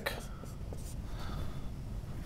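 Marker writing on a whiteboard: quiet, irregular scratching strokes.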